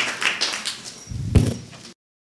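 Audience applause dying away, then a single low thump a little over a second in, after which the sound cuts off abruptly.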